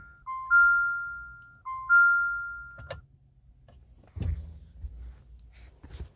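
Jeep Renegade dashboard warning chime sounding twice, each a two-note low-high ding-dong that rings and fades, with no engine cranking as the push-button start fails. A click follows near the middle and a dull thump a little later.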